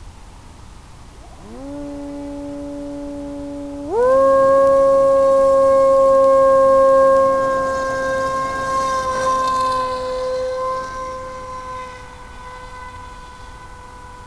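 NTM 2836 1800kv brushless outrunner motor and propeller of an FPV plane spooling up for takeoff: a whine rises to a steady pitch about a second and a half in, then jumps higher to a loud full-throttle whine at about four seconds. The whine holds its pitch and grows fainter over the last few seconds as the plane takes off.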